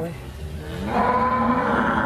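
A cow mooing: one long call that starts about half a second in and grows louder at about the one-second mark.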